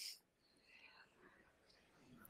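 Near silence: faint room tone, with a brief soft hiss at the very start.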